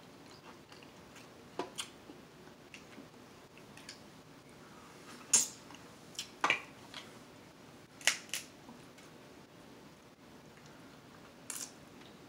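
Close-miked eating of a seafood boil: quiet chewing punctuated by sharp clicks and smacks a second or more apart, the loudest about five seconds in and the last near the end.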